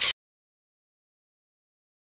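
A slideshow's transition sound effect: one short noisy burst of about a third of a second, right at the start.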